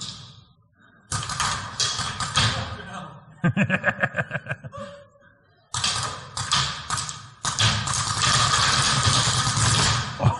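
Paintball markers firing in quick bursts of sharp pops that echo around a large hall, with a denser run of shots in the last couple of seconds.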